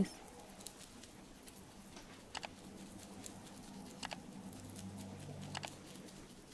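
Faint, soft rubbing of fingertips working cleansing balm over the skin of a man's forehead in circular motions, with a few small sticky clicks.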